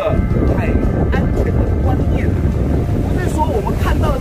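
Wind buffeting the microphone: a steady low rumble under a man's speech.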